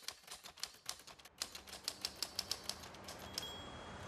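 Typewriter keystroke sound effect: a rapid run of sharp key clicks, about six a second, as a title types itself out, giving way to a soft rising whoosh near the end.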